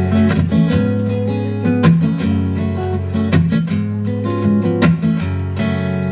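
Instrumental passage of live Cuban guajira music with a blues tinge: a strummed string instrument over steady low notes, with no singing.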